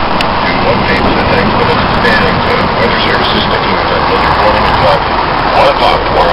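A loud, steady rush of noise with indistinct voices underneath.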